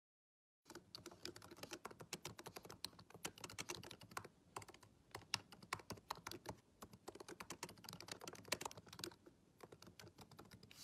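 Typing on a MacBook Pro laptop keyboard: a quick, uneven run of key clicks that starts under a second in, with short pauses between bursts.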